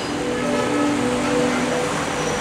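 Background music of soft sustained chords: a few held notes that change slowly, with no beat.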